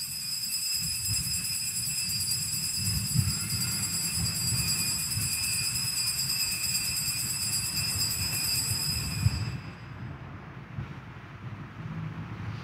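Altar bells rung continuously at the elevation of the chalice after the consecration, with a shimmering high ringing that stops about nine and a half seconds in. A low rumble runs underneath.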